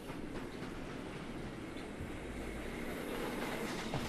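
Steady running noise of a moving passenger train heard from inside a compartment, a low rumble of wheels on the rails.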